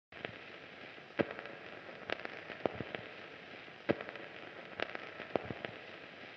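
Faint irregular crackling: scattered sharp clicks and pops over a steady hiss, with two louder pops about a second in and near the four-second mark.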